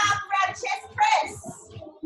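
A person's voice in several short phrases, fading near the end.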